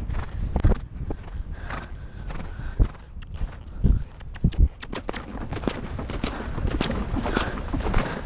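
A horse's hoofbeats on grass turf, an irregular run of thuds over a steady low wind rumble on the microphone.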